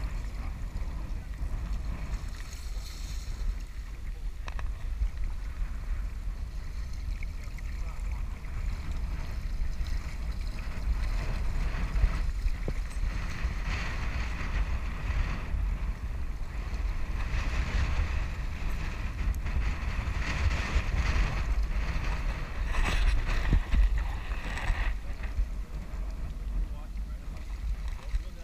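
Wind buffeting the microphone over rushing river water, with louder stretches of splashing in the second half as a hooked steelhead thrashes at the surface.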